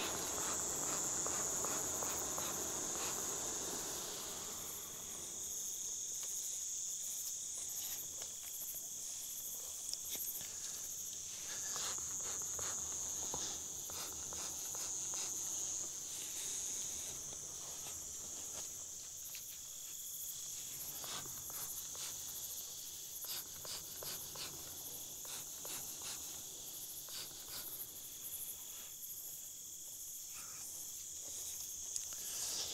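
Steady, high-pitched chirping of night insects. A rushing burst of noise fills the first few seconds, and light clicks and rustles are scattered through.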